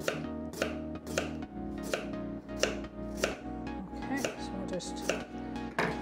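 Kitchen knife thinly slicing raw, unpeeled potatoes on a wooden chopping board, each stroke a crisp cut ending in a tap on the board, at a steady rhythm of about two cuts a second.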